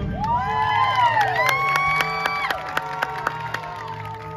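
Several voices whooping and cheering in overlapping rising-and-falling calls right after a marching band's loud brass hit cuts off, with scattered sharp clicks. A held musical tone carries on beneath and outlasts the cheers.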